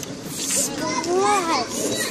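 A child's high voice about a second in, gliding up and down in pitch with no clear words.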